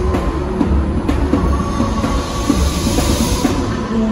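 Loud live music over an arena sound system, with heavy bass pulses. A hiss-like swell builds in the upper range and cuts off shortly before the end.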